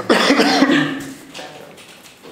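A man coughs once into his hand, clearing his throat: a loud cough lasting about a second, starting abruptly at the start.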